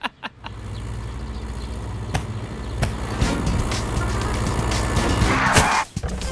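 Cartoon car engine running steadily under background music. Near the end comes a short rushing burst as a mass of snow slams into the car.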